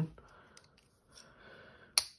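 A pause with a soft breath drawn in, then a single sharp click just before the end.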